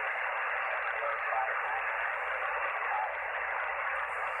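Icom IC-R75 shortwave receiver on the 75-metre band in lower-sideband mode, putting out a steady hiss of band static, with a weak voice faintly audible beneath the noise.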